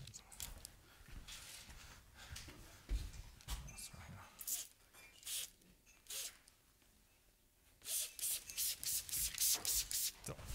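Hand spray bottle being pumped, giving short hissing squirts: a few spaced ones around the middle, then a quick run of about four a second over the last two seconds.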